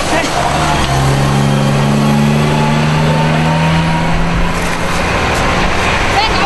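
A motor vehicle's engine running at a steady pitch over constant outdoor noise, strongest from about a second in and fading after the fourth second.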